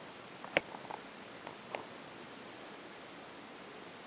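Quiet room tone: a steady faint hiss, with a few small clicks in the first two seconds.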